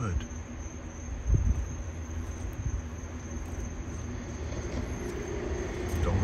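Crickets chirring in a steady high drone over a constant low rumble, with a single dull thump about a second in.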